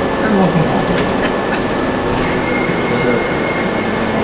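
Interior noise of a moving resort transit bus: a steady engine and road drone heard from inside the cabin, with a thin steady whine joining about two seconds in.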